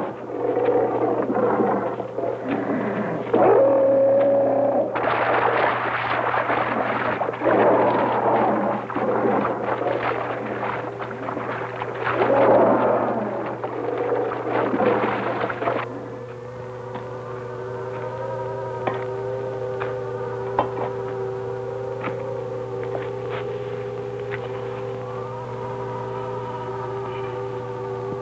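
Film soundtrack of an alien planet: for about sixteen seconds, dense, noisy churning effects as a figure wades through water. Then a quieter, steady electronic drone of several held tones to the end.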